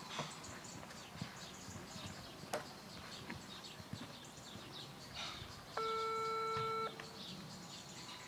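Birds chirping in the background, with soft, irregular thuds of a horse's hooves cantering on a sand arena. About three quarters of the way through comes a single steady electronic beep lasting about a second, the loudest sound.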